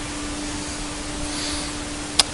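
Conquest 515 CNC router running a 3/8-inch compression spiral bit through sheet stock to cut a three-quarter-inch dado in several passes: a steady rushing sound with a steady hum under it.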